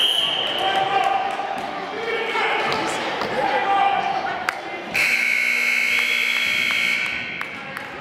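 Gym scoreboard buzzer sounding one steady tone for about two seconds, starting about five seconds in. Around it, basketball bounces and the voices of players and spectators echo in the hall, with a short high tone right at the start.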